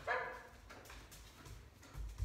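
German Shepherd dog giving one short bark just after the start, followed by quieter low knocks.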